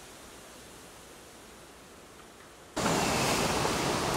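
Faint, steady outdoor background noise, then about three-quarters of the way in an abrupt jump to a much louder, even rushing hiss with no distinct events.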